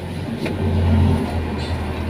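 A low rumble with a hiss over it, swelling about half a second in and easing after about a second.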